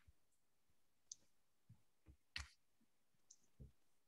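Near silence with a few faint, short clicks and taps at irregular intervals, the loudest about two and a half seconds in.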